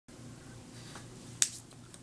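A single sharp snap of hands striking together about a second and a half in, with a fainter tap just before it, over a steady low electrical hum.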